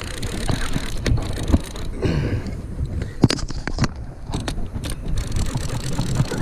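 Steady low rumble of wind on the microphone over open water, with a scattering of sharp clicks and knocks from the rod and reel as a large hooked fish is pumped and reeled in.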